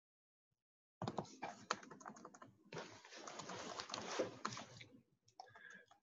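Faint, rapid clicking and tapping at a computer keyboard and mouse, starting about a second in, with a stretch of rustling hiss in the middle.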